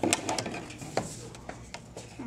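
Cardboard packaging being handled: a few short sharp taps and scrapes of card stock, clustered at the start, with single ones about a second in and again near the end.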